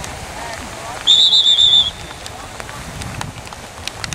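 Referee's pea whistle blown once, a single shrill, warbling blast of just under a second, starting about a second in.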